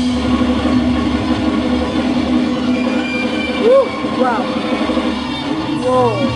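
Live amateur rock band with electric guitars sustaining a held, droning chord, and a couple of bent notes sliding in pitch about four seconds in.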